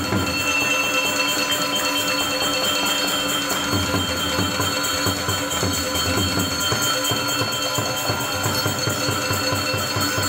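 Balinese gamelan orchestra playing: bronze metallophones ring in fast, even strokes over steady sustained tones.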